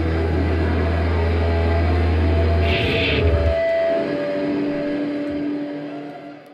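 A live rock band ending a song on a held chord: a steady low bass drone under sustained guitar tones. About three seconds in, the bass cuts out with a short crash, and a few held guitar notes ring on, fading out near the end.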